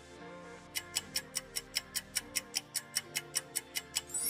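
Quiz countdown-timer sound effect: fast clock ticking, about five ticks a second, starting about a second in, over soft background music.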